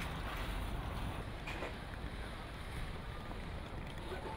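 Steady open-air background noise with a low rumble of wind on the microphone, and a faint knock about one and a half seconds in.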